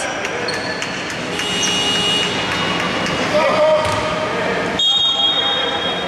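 Basketball being bounced on the wooden court, with sneakers squeaking on the floor as play goes on.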